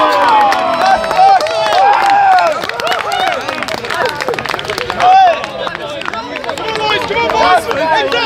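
Several people shouting and cheering at once outdoors after a goal in an amateur football match, with a few scattered claps.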